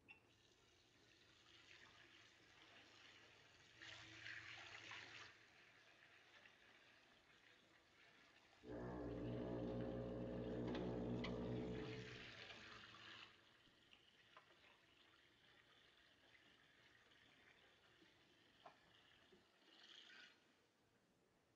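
Faint water running from a washbasin tap, louder for a few seconds about halfway through, with a few small clicks.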